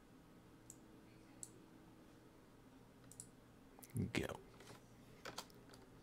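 Quiet, scattered clicks of a computer mouse, a few single clicks and then a short cluster. About four seconds in there is a brief, louder, low sound.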